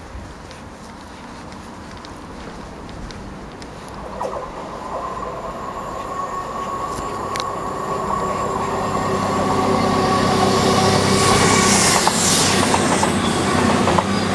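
CrossCountry Voyager diesel multiple unit approaching along the line and passing close by, growing steadily louder over about ten seconds. A steady high tone comes in about four seconds in, and the rush of wheels and air peaks as the coaches go past near the end.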